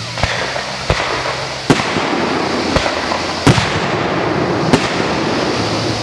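Consumer aerial fireworks launching and bursting: about six sharp bangs at irregular intervals, roughly a second apart, over a steady hiss.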